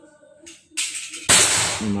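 PCP air rifle (a 500cc-bottle FX Crown-style build) firing one loud shot a little past the middle, with a short ring-out; a softer burst of noise comes just before it.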